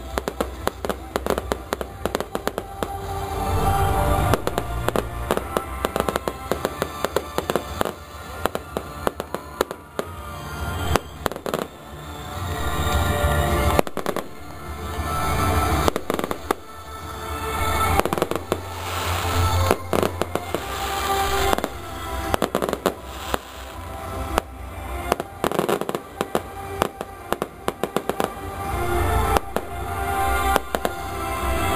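Aerial fireworks going off in rapid succession: many sharp bangs and crackles with a low rumble that swells and fades. Music plays underneath.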